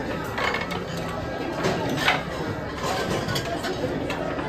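Busy restaurant dining-room hubbub: many voices talking at once in the background, with a few short sharp knocks.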